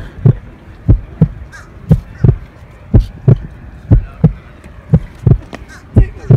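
Heartbeat sound effect: pairs of low thumps, lub-dub, repeating steadily about once a second.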